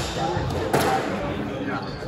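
Squash rally: the hard rubber ball cracking off racket strings and the court walls in a reverberant court, with short rubber-soled shoe squeaks on the wooden floor.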